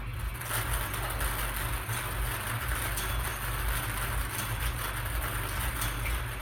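Numbered balls rattling and tumbling inside a hand-cranked wire bingo cage as it is spun, a steady continuous clatter.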